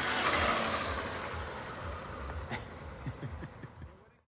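Electric scooter close by, a high buzzing whine over road and wind noise, loudest about half a second in and then fading away.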